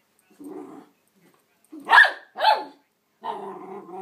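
Cockapoo puppy giving a short low growl, then two loud, sharp barks in quick succession about two seconds in, while playing at a roll of packing tape.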